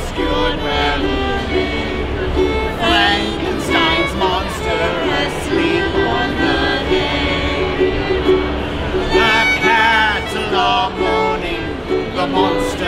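Live acoustic music from a violin and a plucked mandolin playing a song together.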